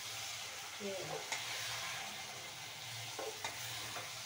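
Vegetables sizzling as they are fried and stirred in a metal pot, a steady hiss with a few light clicks and scrapes of a metal spoon against the pot.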